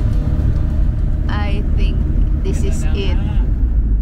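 Steady low road and engine rumble of a moving Mitsubishi Delica Starwagon camper van. A voice is heard briefly in the middle.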